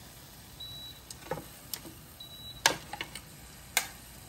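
Metal tongs and wooden skewers clicking against the grill plate of an air-fryer basket as kebabs are laid in: a few scattered sharp clicks, two of them louder, the louder pair near the end.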